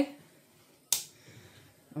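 A single sharp click about a second in: the slow cooker's rotary control knob being turned to the high setting.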